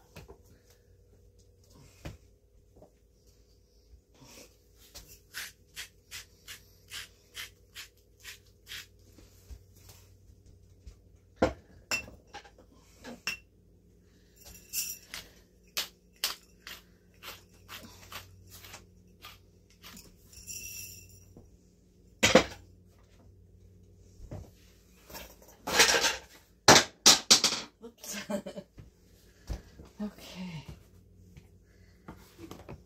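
Kitchen handling sounds while making sandwiches on a wooden cutting board: a table knife scraping and tapping on toast, a run of evenly spaced light ticks like a seasoning shaker being shaken, and several sharp knocks and clatters against the board, the loudest about two-thirds of the way through and near the end.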